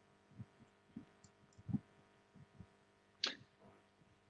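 Near silence on a video-call line, broken by a few faint, short low thumps and, about three seconds in, a brief breath-like noise.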